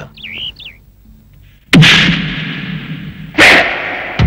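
A short warbling chirp, then two sudden loud bangs about a second and a half apart, each ringing out slowly afterwards.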